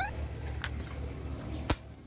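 A single sharp metallic click near the end, with a fainter tick earlier, as a removed diesel glow plug and its test lead are touched to the car battery's terminal to test the plug, over a low steady background hum. The plugs tested here turn out to be burnt out.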